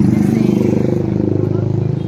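A motorcycle engine passing close by in roadside traffic, loudest at the start and easing off slightly as it goes past.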